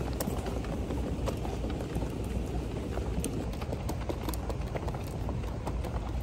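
Wheeled hard-shell suitcase rolling over a tiled floor, with footsteps: a steady low rumble with scattered sharp clicks.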